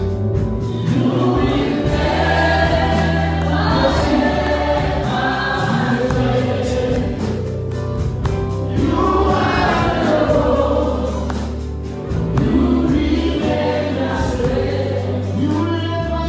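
A church worship team of men and women singing a gospel worship song together into microphones, backed by a live band with held low bass notes.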